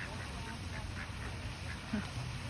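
Ducks quacking in a run of short, quick calls, several a second.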